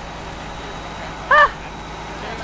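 Steady background noise, and about one and a half seconds in a person's short 'ah'.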